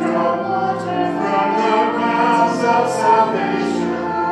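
A choir singing sacred music in long held chords.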